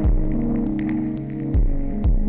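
Elektron Digitakt pattern of sampled piano chords, held and shifting from note to note. A deep kick-like thump lands near the start and again about a second and a half in, with faint light ticks above.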